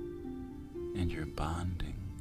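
Slow ambient meditation music of held low notes, with a soft whispered voice about a second in.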